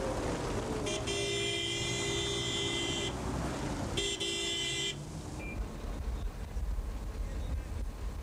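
A horn sounding twice: a steady blast of about two seconds, then a shorter one about a second later, over a steady outdoor background.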